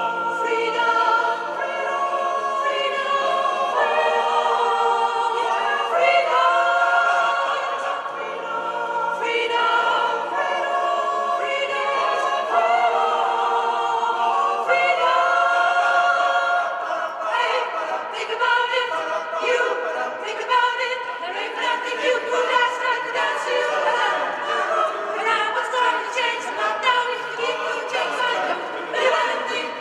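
Mixed choir of men's and women's voices singing a cappella in several parts. Long held chords give way about halfway through to shorter, more rhythmic notes.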